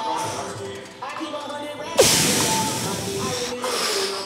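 A man breathing hard under strain while holding a side plank: a weaker breathy exhale near the start, then a forceful breath out that starts sharply about halfway through and lasts over a second. Background music plays underneath.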